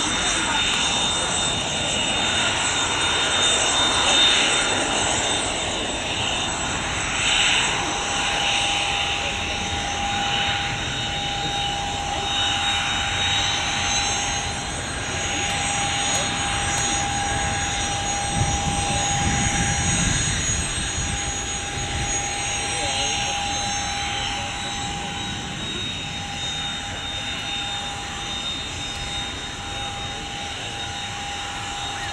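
Business jet's rear-mounted turbofan engines running at taxi power, a steady whining hiss with a clear steady whistle joining about a quarter of the way in and higher-pitched whistles over the middle. A low rumble swells briefly past the middle.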